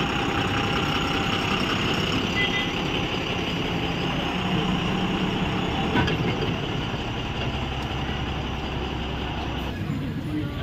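A diesel bus engine running steadily close by, amid the general noise of other vehicles.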